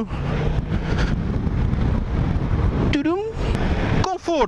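Steady rush of wind and road noise on a helmet microphone while riding a Kymco AK550 maxi-scooter at town speed, with its engine running underneath.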